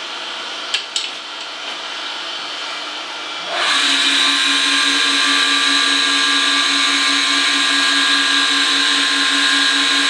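Surface grinder running, with two light clicks about a second in. About three and a half seconds in, the diamond wheel starts cutting the aluminum oxide bench stone, and a louder, steady grinding hiss with a high whine takes over.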